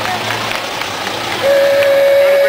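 A horn sounds one loud, steady note, starting about one and a half seconds in, over a low engine hum and faint crowd chatter.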